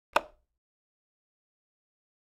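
A single sharp click or knock just after the start, dying away within a quarter of a second, followed by dead silence.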